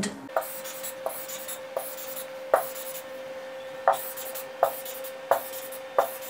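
Stylus drawing on an interactive whiteboard: a sharp tap every second or so as each arrow is started, with light scratchy stroking between, over a faint steady tone.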